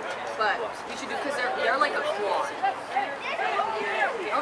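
Chatter of several overlapping voices close to the microphone, with no single clear speaker.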